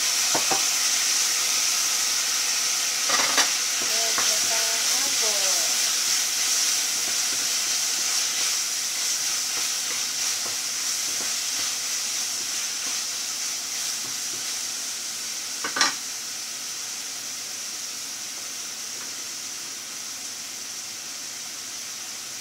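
Pineapple pieces sizzling in hot oil in a wok, loudest as they go in and slowly dying down, while a spatula stirs them. The spatula knocks sharply against the pan about three seconds in and again near sixteen seconds.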